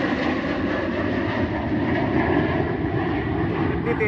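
Formation of fighter jets passing overhead, their jet engines making a steady, unbroken noise.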